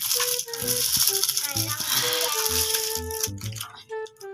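Plastic candy wrapper crinkling as a small wrapped chocolate is torn open by hand, loud for about three seconds and then fading. Background music with a melody and bass line plays underneath.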